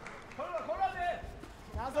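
A raised voice calls out over arena noise as the bout restarts. Near the end come a few sharp thuds of the fighters' feet and kicks landing on the mat and body protectors.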